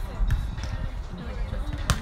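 Volleyball struck by players' forearms and hands in a beach volleyball rally: a hit at the start and a sharper, louder one near the end.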